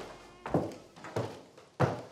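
Footsteps going down a staircase: firm, evenly paced thuds, three in two seconds.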